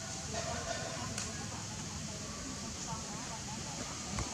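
Outdoor background of faint, distant voices over a steady low rumble, with a single sharp click a little over a second in.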